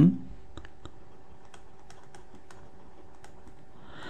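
Light, irregular clicks of a computer mouse button, about a dozen, as letters are handwritten with the mouse in a paint program, over a faint steady hum.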